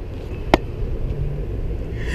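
Low, steady rumble of road traffic and car engines, with one sharp click about half a second in.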